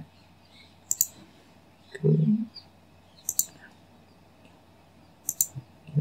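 Computer mouse buttons clicking: a single click about a second in, then quick pairs of clicks past the middle and near the end.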